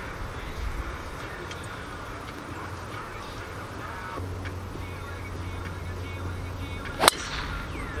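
Golf driver striking a ball off the tee: one sharp crack of the clubhead about seven seconds in.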